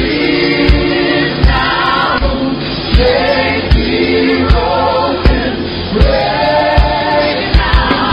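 Gospel worship music: a choir singing over a band, with a steady kick drum beat about four beats every three seconds.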